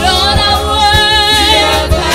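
A woman sings a Yoruba gospel praise chorus through a microphone and PA, her voice loud, held and wavering in pitch. Low drum beats sound underneath.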